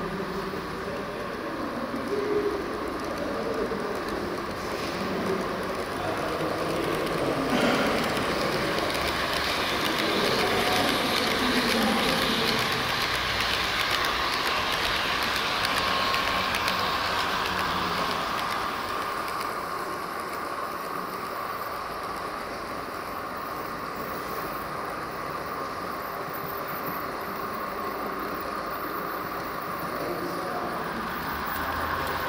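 H0-scale model train, an electric locomotive with passenger coaches, running on layout track: a steady whir with wheel clatter. It grows louder about a quarter of the way in as the train passes close, then eases off in the last third.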